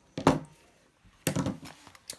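Two short knocks of metal pliers being set down on a plastic cutting mat, one about a quarter second in and another a little after a second.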